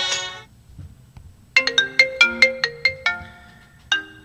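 A song ends just as this begins. After a gap of about a second a ringtone melody plays: a quick run of bright, fast-fading notes, about four a second, pausing briefly and then starting again near the end.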